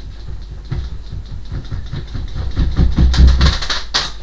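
Objects being shifted and scraped about on top of a wooden wardrobe: a quick run of rattling, scraping strokes that grows louder to its loudest about three seconds in, ending with a sharp knock.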